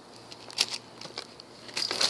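Light handling of plastic shrink-wrap and a cardboard box: a few scattered crinkles and clicks, the sharpest about half a second in, with rustling picking up near the end.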